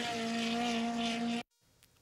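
Midget race car engine running at a steady, held pitch on a dirt oval, cutting off abruptly about a second and a half in, followed by silence.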